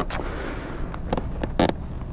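A rider pinned beside his fallen motorcycle shifts about and handles it: a steady low rumble with a few brief knocks and scrapes, the clearest about a second and a half in.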